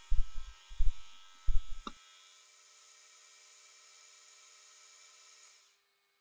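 Milling machine cutting the steel body of a ball-turning tool with an end mill: a few short, loud bursts in the first two seconds over a steady machine whine, then only a faint steady hum that cuts out shortly before the end.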